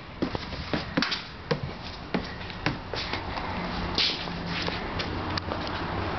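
Footsteps on a hard floor mixed with knocks from a handheld camera being carried, irregular taps about twice a second, with a faint low hum coming in about halfway through.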